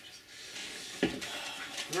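Small plastic objects being handled: rustling and scraping, with one sharp click about a second in.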